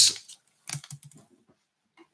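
A short run of light clicks and knocks about half a second in, lasting about half a second: handling noise as objects are picked up and moved.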